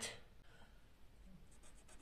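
Faint scratching of a marker pen writing, a few quick strokes in the last half second.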